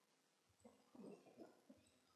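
Near silence: room tone, with a few faint soft sounds between about half a second and two seconds in.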